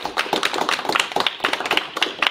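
A small audience of about a dozen people applauding, a dense, steady patter of hand claps.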